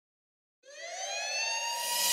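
Silence, then about two-thirds of a second in, an electronic synth riser: a siren-like tone gliding steadily upward, joined near the end by a swelling hiss, the build-up that opens a club remix.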